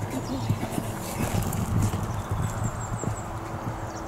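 Horse cantering on a sand arena surface: dull, uneven hoofbeats, loudest a little past the middle. A bird chirps faintly in the background.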